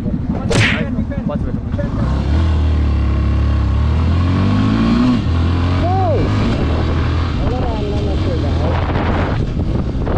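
Yamaha motorcycle's engine pulling away about two seconds in, rising in pitch as it accelerates, with a brief dip around five seconds at a gear change, then running steadily at road speed with wind rushing over the camera microphone.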